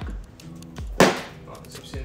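An 18V Ryobi ONE+ battery pack being pushed into the mower's battery port, snapping into place with one sharp click-thunk about a second in.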